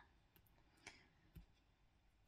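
Near silence: room tone with two faint clicks, about a second in and again half a second later.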